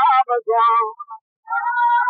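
A high-pitched voice singing or chanting a melodious recital in short phrases with brief pauses, the pitch bending and gliding within each phrase.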